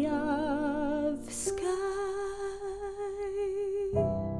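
A woman's solo singing voice on a slow closing phrase with marked vibrato over soft sustained piano, a short hissing consonant about a second and a half in, then one long held note that stops near the end.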